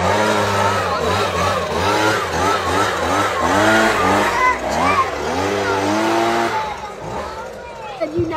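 Handheld leaf blower running steadily, blasting air through the branches of a dusty artificial Christmas tree, cutting off about six and a half seconds in. Voices rise and fall over it.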